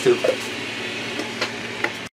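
Steady background machine noise: a low hum under an even hiss, with a few faint clicks.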